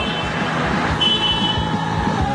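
Street traffic noise, with a brief high beep about halfway through.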